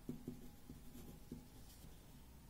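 Pen writing on paper: a run of faint, quick scratches and taps as a word is handwritten, thinning out towards the end.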